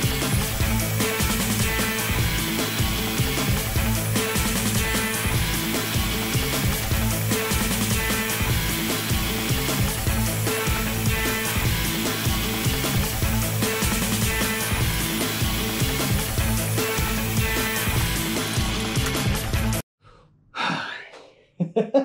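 Background music with a steady beat that cuts off abruptly about two seconds before the end, followed by a man sighing briefly.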